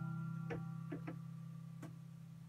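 The last guitar chord ringing out and slowly fading, with a few light clicks and knocks as the phone is handled.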